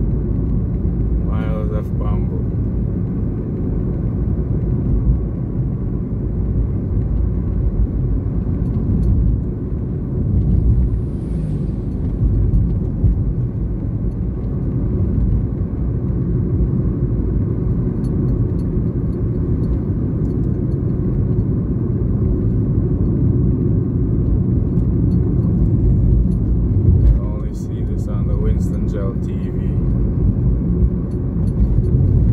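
Steady low rumble of a car's engine and tyres on the road, heard from inside the cabin while driving, with brief snatches of voice about two seconds in and near the end.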